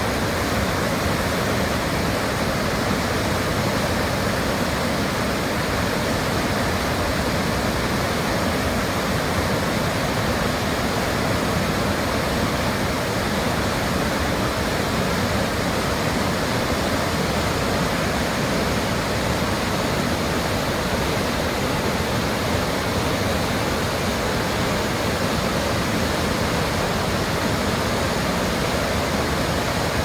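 Whitewater rapids of the Deschutes River rushing in a steady, unbroken roar of water.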